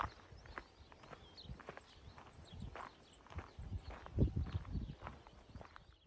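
Faint outdoor ambience: scattered soft taps with a few thin, high bird chirps, and a short low rumble of wind on the microphone about four seconds in.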